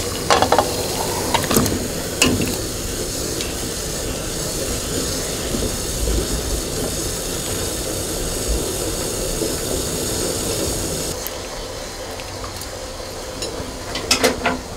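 Pot of water at a rolling boil with whole sea cucumbers blanching in it, a steady bubbling hiss. A few clinks of metal tongs against the plate and pot come in the first couple of seconds. About eleven seconds in, the hiss drops and gets quieter.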